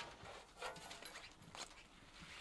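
A few faint footsteps crunching in packed snow, spaced irregularly.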